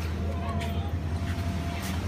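Steady hum of an inflatable bounce house's electric air blower, with a thin steady tone above it. A couple of brief soft rustles or thuds come from the vinyl as children bounce.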